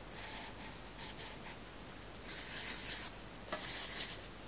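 Pencil scratching on paper in short sketching strokes, as arrows are drawn and circles scribbled. The scratching is louder in the second half, in two longer bursts.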